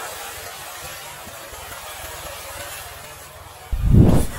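Pool water splashing and churning as a person plunges in, a steady rushing spray. A sudden loud low thump near the end.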